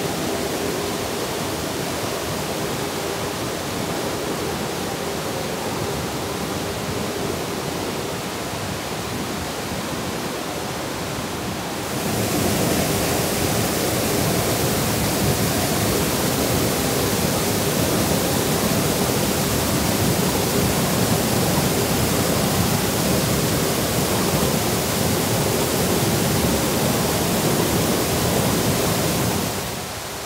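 Mountain stream rushing over rocks and small waterfalls, a steady rush of water. About twelve seconds in it jumps suddenly louder and brighter.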